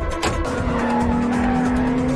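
Sports cars' engines running and tyres squealing at speed, over a music score.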